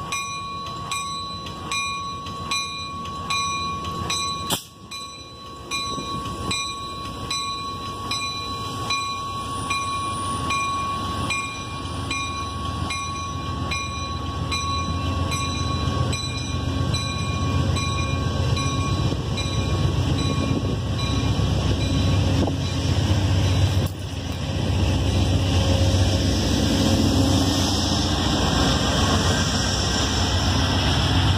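Amtrak Heartland Flyer train with P42DC diesel locomotives moving off and passing close by. A crossing bell dings about twice a second for the first dozen seconds and fades, with one sharp knock about four seconds in. The low rumble of the locomotive and train then grows louder and stays loud to the end.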